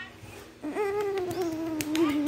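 A child's voice holding one long sung note, starting about a third of the way in, its pitch sagging slowly. A few light clicks sound alongside it.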